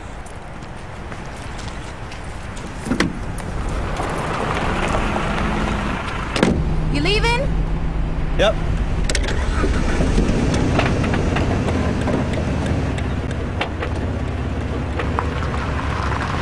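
Car engine running, getting louder over the first few seconds and then holding steady. There is a sharp knock about three seconds in and a louder one about six and a half seconds in, followed by short rising whines.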